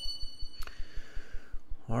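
A short high electronic ding, several ringing tones at once, fading out about half a second in and ending with a click. The word "all right" follows near the end.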